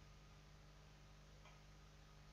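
Near silence: faint room tone with a steady low hum and one faint click about one and a half seconds in.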